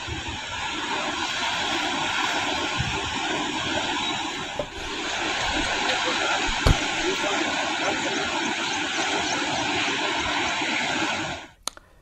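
Steady rushing of the flooded Tungabhadra River's fast-flowing water, with a brief dip about five seconds in. It cuts off just before the end.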